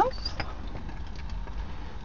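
Omelette of eggs and cheese sizzling in a frying pan on the stove, a faint steady hiss over a steady low rumble.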